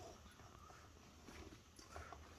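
Near silence: faint rustles and a few light ticks as hands work powdered sugar into a roasted wheat-flour and nut mix in a steel bowl.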